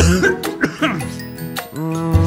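A man coughing, acted for a cartoon, over children's song music.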